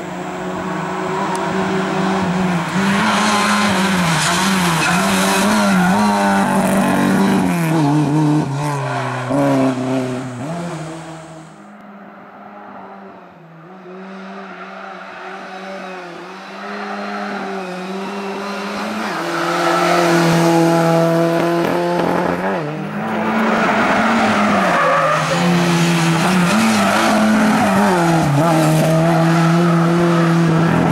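Lada 2107 race car's engine revving hard, the pitch climbing and falling again and again through gear changes and lifts for the corners. About twelve seconds in the sound drops off sharply and stays lower for several seconds, then builds back to full, loud revving from about twenty seconds in.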